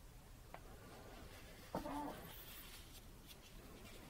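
Faint dabbing and scratching of a small brush laying acrylic paint on a stretched canvas. About two seconds in comes a sharp click and a short, low pitched sound.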